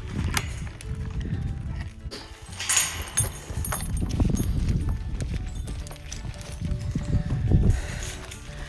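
Wind buffeting a phone microphone in uneven low rumbles, under faint background music, with a brief crackling rustle about three seconds in.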